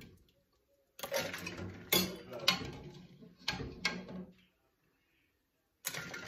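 A metal spoon clinks against a steel pot and a stainless bowl of ice water as hard-boiled eggs are moved from the hot water into the ice. It makes four or five sharp clinks in the first few seconds, then goes quiet, with one more clink near the end.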